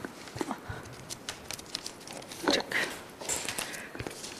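Paper rustling with small taps and clicks as paper strips are pressed and taped onto a flipchart sheet right beside a handheld microphone.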